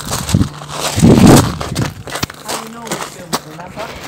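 Dry fallen leaves crunching and rustling underfoot, mixed with rubbing and knocking from a phone being handled, in irregular crackly bursts that are loudest about a second in.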